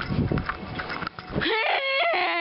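Low rumbling noise, then about a second and a half in a person's voice lets out a loud, high, drawn-out cry that rises and then wavers in pitch.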